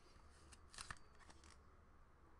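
Faint rustling and a couple of light clicks from a trading card in a clear plastic holder being handled, about half a second to a second and a half in; near silence otherwise.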